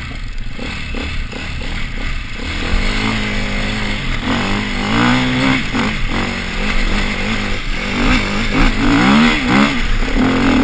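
Off-road motorcycle engine running under the rider, low and uneven for the first few seconds, then revving up and down. Near the end come quick repeated blips of the throttle.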